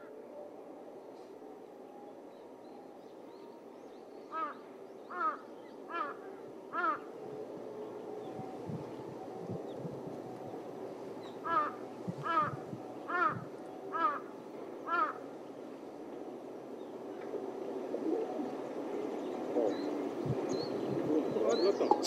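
A crow cawing in two runs: four caws just under a second apart, then after a pause five more, over a steady outdoor background hum.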